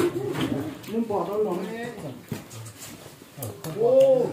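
Men talking in low voices, in short phrases with pauses between them.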